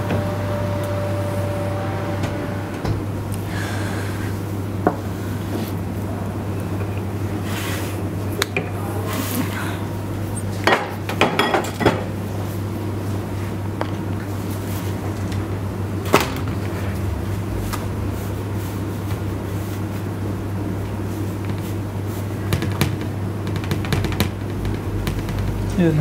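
Scattered clanks and knocks of a metal baking tray and kitchen utensils on the counter while pizza dough is pressed out on the tray, over a steady low hum.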